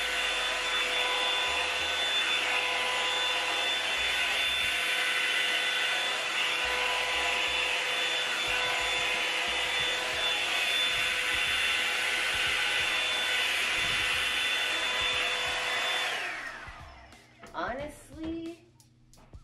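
Revlon One-Step hair dryer brush running on its high setting: a steady rush of air with a high motor whine. About 16 seconds in it is switched off, and the whine falls in pitch as the motor spins down.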